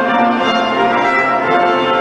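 Symphony orchestra with brass playing held chords, a short instrumental passage between phrases of a solo operatic voice.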